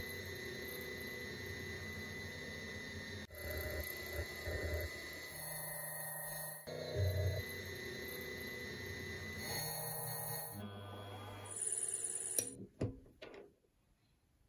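Small milling spindle motor running on a lathe toolpost while it cuts aluminium, heard in short clips that change abruptly every few seconds, with a few sharp clicks near the end.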